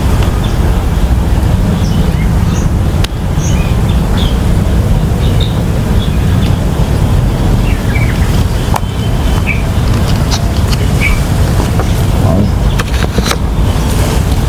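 Steady low outdoor rumble with short, high bird chirps scattered through it.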